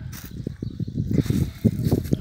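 Low, uneven rumbling noise made of many small irregular knocks, with a sharper knock near the end.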